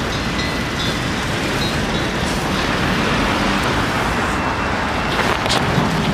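Steady road traffic noise from passing vehicles, with two brief clicks about five seconds in.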